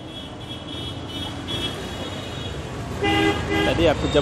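Street traffic with vehicle horns: a high-pitched repeated tooting in the first half, then louder honks in short blasts from about three seconds in, over a steady traffic rumble.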